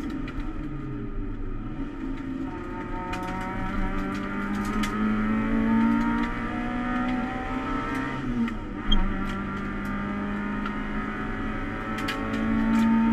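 Toyota Starlet EP91 race car's 1.3-litre 4E-FE four-cylinder engine heard from inside the stripped cabin, pulling under load with its pitch slowly rising. The pitch drops back about eight and a half seconds in, with a brief thump just after.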